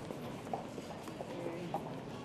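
Scattered footsteps knocking on a hard floor over a low murmur of voices.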